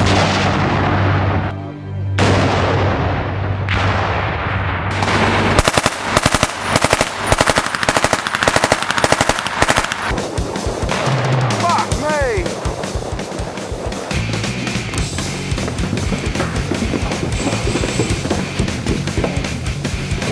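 Machine-gun fire in rapid bursts over loud rock music, with the shooting starting about six seconds in.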